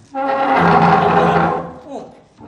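A man's loud, strained yell, lasting about a second and a half and tailing off before the end.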